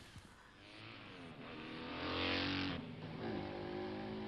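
Road vehicle engine, fairly quiet, its note climbing in pitch as it speeds up, with a rushing hiss. The hiss stops about three seconds in, and the engine carries on at a steadier pitch.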